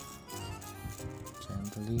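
Background music: a melody of held notes changing every fraction of a second.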